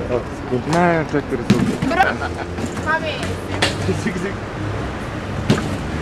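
People's voices calling out around an arcade basketball game, broken by a few sharp knocks of a ball striking the hoop.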